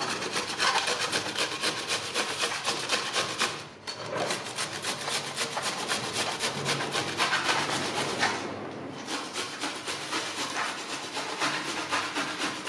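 White radish (mooli) being grated by hand on a flat stainless-steel grater into a steel bowl: quick, steady back-and-forth rasping strokes, with short pauses about four and nine seconds in.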